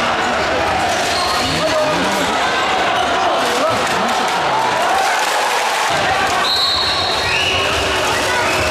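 Basketball bouncing on a hardwood court in a large gym, with spectators' voices and shouts throughout.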